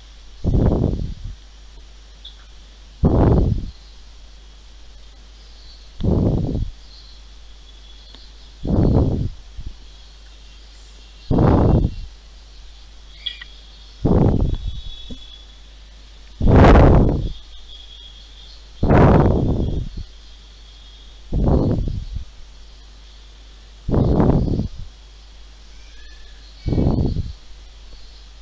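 Regular breaths puffing into a close microphone, about one every two and a half seconds, each a short rough gust with a faint steady hiss between them.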